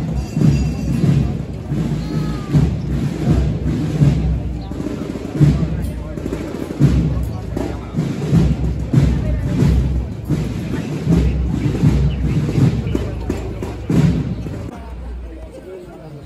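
Procession band drums beating a march, with heavy bass-drum thumps under crowd voices; the beating eases off near the end.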